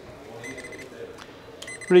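Two-pole voltage tester beeping twice, each a steady high-pitched tone lasting under half a second, the tester's signal that it detects voltage across its probes.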